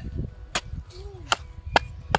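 A small short-handled metal hand hoe striking dry, stony soil three times, sharp separate chops as it digs planting holes for turmeric rhizomes.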